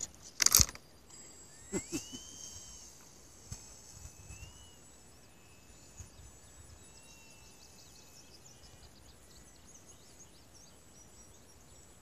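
A short, loud thump about half a second in, typical of a foam RC glider (Hobbyzone Conscendo S) touching down on grass, with a few smaller knocks just after. This is followed by quiet open-air background with faint insect ticking and a few short whistled calls.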